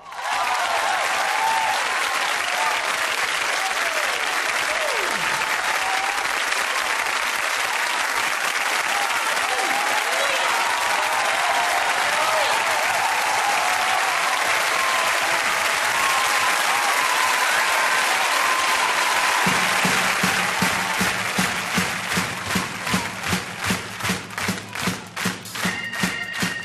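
A studio audience applauding and cheering, with scattered shouts over the clapping. About two-thirds of the way through, music comes in underneath and the clapping falls into a steady beat of about two claps a second.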